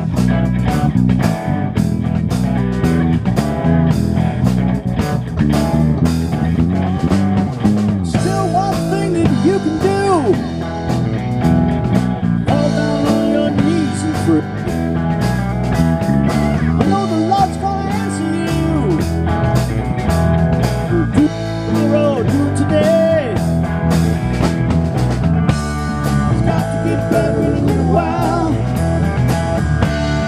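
Live blues-rock band of two electric guitars, electric bass and drum kit playing an instrumental passage. From about eight seconds in, a lead electric guitar bends notes over a steady drum beat and bass line.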